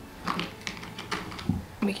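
A few light, sharp clicks and taps, about one every half second, in a quiet room.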